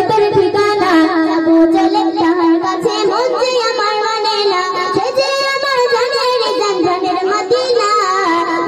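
A young girl singing a Bengali gojol, an Islamic devotional song, into a microphone over a stage PA system, holding long, wavering notes.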